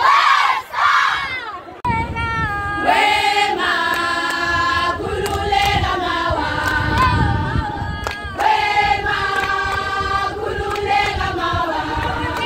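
A group of young women shouting and cheering, then, after an abrupt cut about two seconds in, singing together without instruments in harmony with long held notes.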